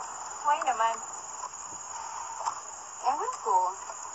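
Steady high chirring of crickets, with two brief voice sounds, one about half a second in and one about three seconds in.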